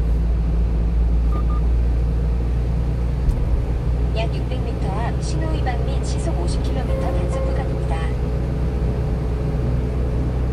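Steady low rumble of a 1-ton box truck's engine and tyres on a wet road, heard from inside the cab while driving at a constant speed.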